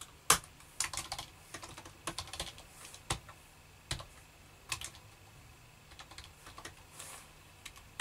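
Computer keyboard typing: irregular runs of keystrokes with a few louder single key strikes, thinning to fewer, softer clicks over the last three seconds.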